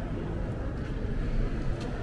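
Indoor shopping-mall ambience: a steady low rumble of the large hall, with a couple of faint clicks near the end.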